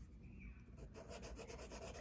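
A soft pastel stick rubbed across pastel paper to lay down a colour swatch: faint, rapid scratchy strokes that start about a second in.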